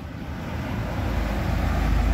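A road vehicle passing close by, its low engine-and-road rumble growing steadily louder.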